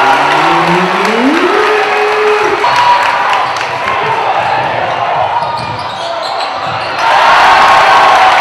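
Crowd chatter in a reverberant gymnasium, with a basketball being dribbled on the hardwood court. A voice calls out in a drawn-out rising tone in the first two seconds, and the crowd grows louder about seven seconds in.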